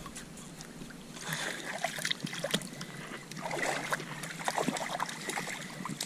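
Shallow lake water splashing and trickling softly as a young puppy paddles through it, with small scattered splashes.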